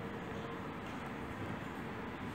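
Steady rushing background noise at an even level, with no distinct clicks or voices.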